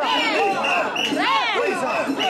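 A crowd of mikoshi bearers shouting a rhythmic carrying chant together, many voices overlapping.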